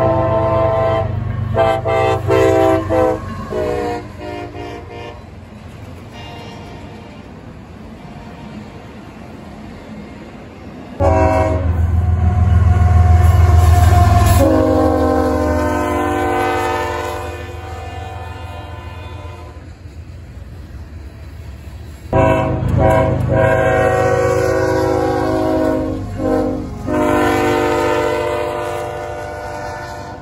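Diesel freight locomotive air horn sounding a several-note chord, in long and short blasts, over the rumble of the passing train. In the middle stretch a locomotive passes close with heavy engine rumble, and its horn drops in pitch as it goes by. The sound breaks off suddenly twice, and the horn starts again in new blasts.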